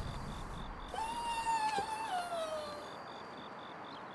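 Crickets chirping steadily in a rapid even pulse, and about a second in a single drawn-out animal call that holds its pitch and then slides down, lasting almost two seconds.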